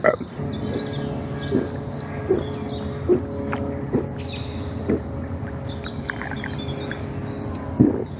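A man drinking a long swig of energy drink straight from a can, gulping and swallowing in a steady rhythm about once a second, over a continuous low drone.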